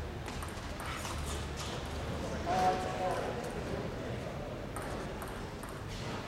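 Light hollow clicks of a table tennis ball off bats, table and floor at the end of a rally and between points. A short shout comes about two and a half seconds in, over the murmur of the hall.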